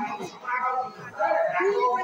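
A man's voice declaiming in Odia in a drawn-out, sing-song delivery, in two phrases with a short break between them.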